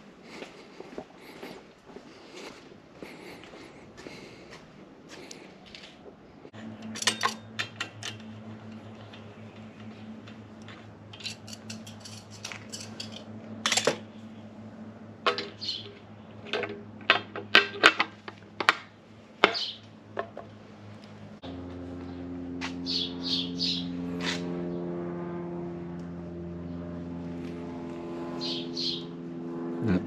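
Metal clinks and knocks of a water pump and tools being handled and fitted onto an aluminium engine block, clustered in the middle of the stretch. Under them runs a steady low hum of several tones that starts a few seconds in and shifts to a different pitch about two-thirds of the way through.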